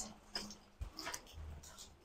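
A dog faintly heard, a few short quiet sounds.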